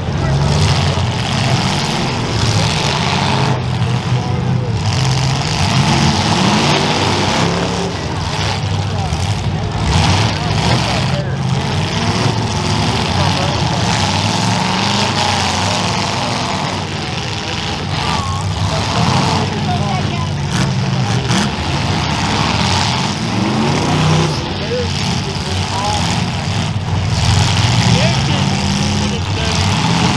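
Demolition derby cars' engines running and revving in a dirt arena, their pitch rising and falling again and again, with voices in the background.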